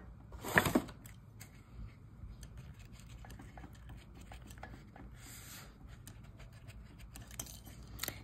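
Faint scratching and light ticks of a ball stylus pressing and rubbing a die-cut cardstock petal into a foam molding mat, softening the paper. A brief louder rustle comes about half a second in, and a soft hiss around five seconds.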